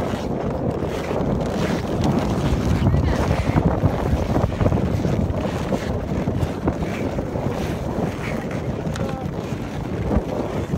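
Steady wind buffeting the camera's microphone, a dense low rumble with no break, and faint voices under it.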